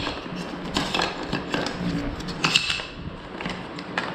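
Hollow carbon-fibre quadcopter arms being lifted out of a cardboard box and laid down on a cutting mat: a few light knocks and clatters, the loudest about two and a half seconds in.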